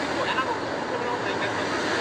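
City street ambience: steady traffic noise with people talking in the background.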